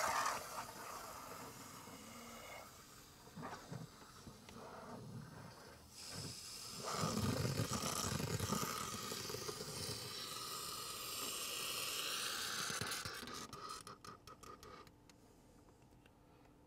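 Aerosol can of foaming AC vent cleaner spraying through a long extension tube into a car's HVAC duct: an uneven hiss, louder from about halfway through, that stops about two seconds before the end as the can runs empty.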